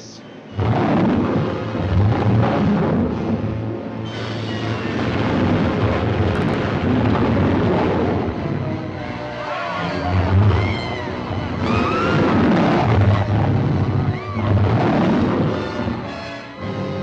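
Loud, dense old movie-trailer soundtrack: dramatic music over low rumbling crashes and explosion-like booms, with high sliding cries rising and falling through the second half.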